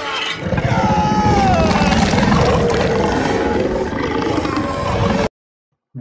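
Loud, dense dramatic film soundtrack, score mixed with sound effects, with a wavering falling tone about a second in; it cuts off abruptly just after five seconds.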